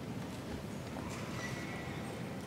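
Footsteps knocking on a stone floor, echoing in a large cathedral over a steady low rumble of room noise.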